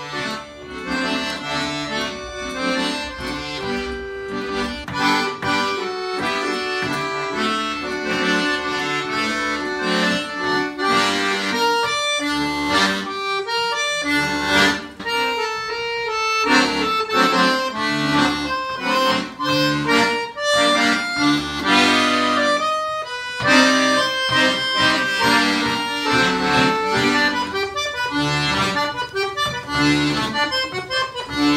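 Two piano accordions playing a milonga together as a duet.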